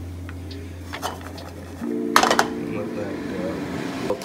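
A low steady hum that stops about halfway through, after which background music comes in with a short clatter of cookware on a frying pan.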